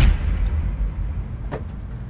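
A heavy cinematic impact hit, the logo sting of an end card, with a deep low rumble that slowly dies away; a short tick about one and a half seconds in.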